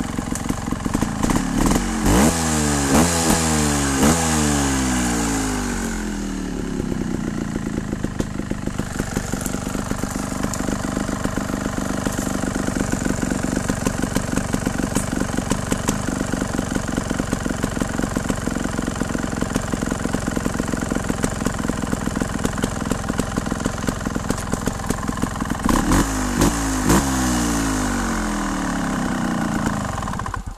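Scorpa trials motorcycle engine blipped up in rev several times in the first few seconds, then held at low revs through the middle, blipped again near the end, and dying away at the very end.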